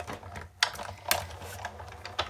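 Big Shot die-cutting machine being hand-cranked, its cutting plates and magnetic platform rolling through to cut out a stamped paper image. A steady low mechanical sound runs under a few sharp clicks.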